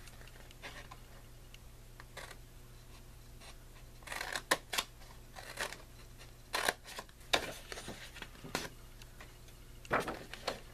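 Scissors snipping through white cardstock, cutting short slits and small notches up to score lines. Faint for the first few seconds, then a run of short, crisp snips about one a second from about four seconds in.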